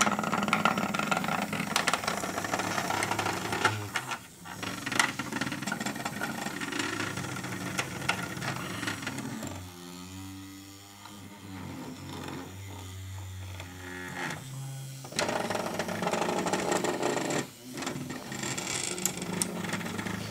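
Hexbug Nano v2's vibration motor buzzing as the little bug skitters and rattles along the plastic track. The buzz is steady, drops quieter for a few seconds in the middle, then picks up again.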